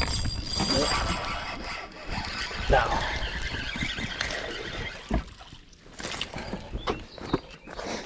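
Spinning reel cranked as a small sunfish is reeled in, with a high squeal in the first second over a busy rattling whirr. It grows quieter with a few sharp knocks in the second half as the fish comes aboard.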